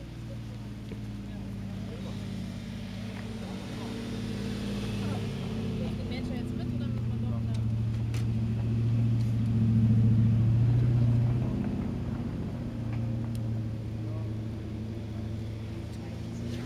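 A vehicle engine running with a steady low hum, growing louder through the middle and easing off again toward the end.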